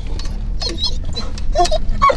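Car engine running at idle, a steady low rumble heard inside the cabin, with a few faint short high-pitched sounds in the middle and near the end.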